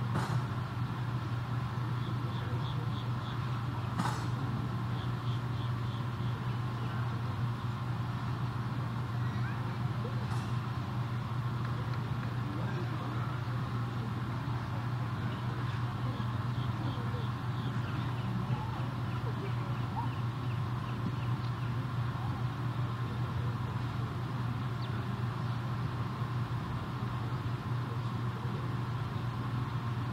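Outdoor arena ambience under a steady low hum, with faint background voices and a few sharp clicks.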